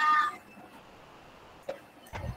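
A short high-pitched call lasting about a third of a second at the start, then low room tone with a single faint click near the end.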